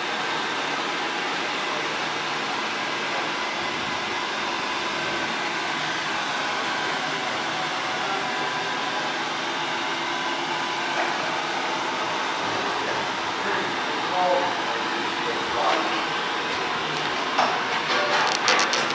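CWD Biowarmer woodchip stoker boiler's blower fan and feed-auger gear motors running: a steady whir with a faint hum. A few light clicks near the end.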